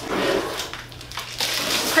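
Plastic wrapping crinkling and rustling as a Cricut Maker cutting machine is tipped up and slid out of its protective plastic bag, in two stretches with a quieter moment between.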